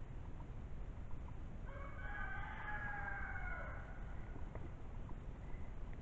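A rooster crowing once, faint, a call of about two seconds that falls in pitch at the end.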